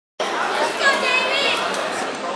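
Overlapping chatter of many spectators' voices in a gymnasium, with one higher voice standing out about a second in.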